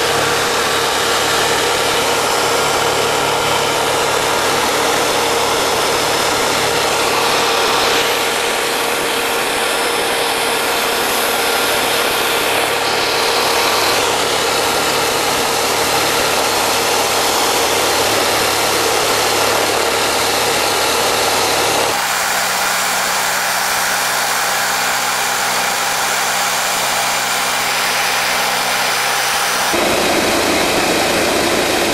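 Helicopter in flight, heard from inside the cabin: a loud, steady engine and rotor noise with a faint hum. About 22 s in the sound changes abruptly and loses much of its low end.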